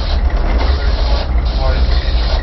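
Twin diesel engines of a tugboat working astern, a steady deep rumble with a hiss over it.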